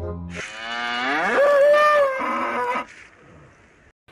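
A single long cow moo that rises in pitch, holds, then fades out about three seconds in.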